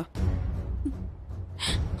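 Dramatic background score with a steady low drone, and a gasping breath near the end.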